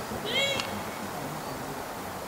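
A dog's short, high-pitched yelp, a single arching squeal about a quarter second in as it clears the A-frame.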